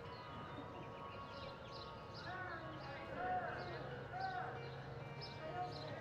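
Indistinct voices talking near the middle, over a steady low hum, with faint short high ticks scattered throughout.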